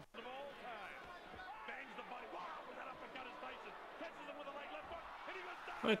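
Faint boxing broadcast audio: a commentator's voice talking, played back quietly, after a brief dropout right at the start.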